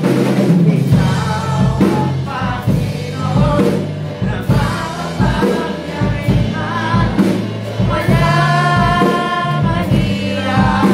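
A live church worship band with electric guitars playing a gospel song while many voices sing together, over a steady beat.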